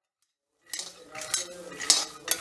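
A metal spatula stirring and scraping peanuts around a pan as they roast, the nuts rattling against the pan. It starts about two-thirds of a second in, in quick strokes, with louder scrapes about halfway and near the end.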